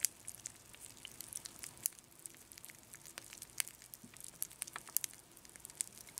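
Frosted Krispies rice cereal crackling in freshly poured milk: a faint, irregular run of tiny snaps and pops, the cereal's "Snap, Crackle, and Pop".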